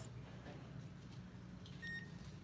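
Quiet steady low hum of a large indoor space, with one short electronic beep near the end.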